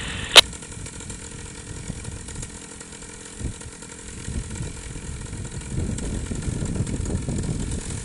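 Paramotor engine idling steadily on the pilot's back, with a low rumble that grows louder over the last couple of seconds as the launch begins.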